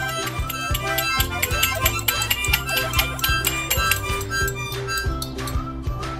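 A group of children playing small percussion and toy wind instruments all at once, harmonicas, maracas and small cymbals, in a jumble of reedy chords and many short rattles and clicks, over background music with a regular bass line.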